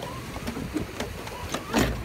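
Plastic pedal boat's steering lever and pedal drive clicking and rattling in irregular knocks as the lever is worked, with a louder thump near the end.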